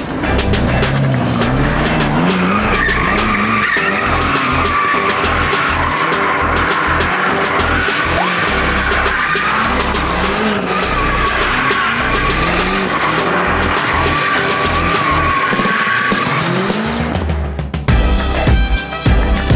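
BMW M5 F90 doing donuts: its tyres squeal with a wavering high pitch while its twin-turbo V8 revs up again and again.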